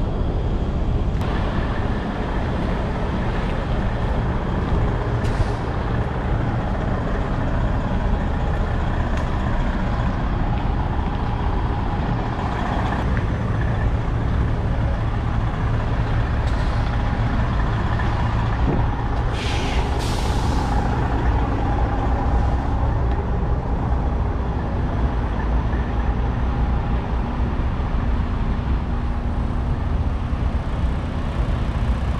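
Semi-truck diesel engines running steadily, with a short air-brake hiss about two-thirds of the way through.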